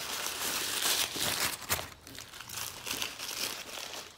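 Paper burger wrapper crinkling as it is unfolded, busiest in the first two seconds and softer after that.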